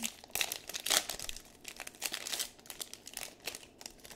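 Crinkling and rustling from handling 2022-23 Panini Prizm basketball trading-card packs and cards, in quick irregular crackles.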